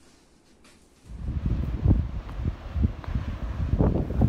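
Quiet room tone for about a second, then wind buffeting the phone's microphone: a loud, low, gusting noise that rises and falls unevenly.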